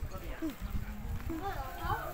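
Indistinct voices making short rising and falling sounds, over low rumbling handling noise from a phone being swung around.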